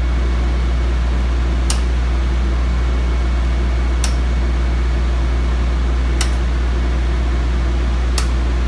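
Circuit breakers in a breaker panel snapping on one at a time: three sharp clicks a little over two seconds apart. Behind them is a steady low hum from the running Power Tech 20,000-watt generator and the air-conditioning unit, as the generator takes up the load breaker by breaker.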